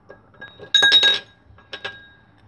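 Small plastic toy figures clinking against a cut-glass bowl as a hand rummages among them, leaving the glass ringing. A quick run of clinks comes a little under a second in, and two lighter clinks follow near the end.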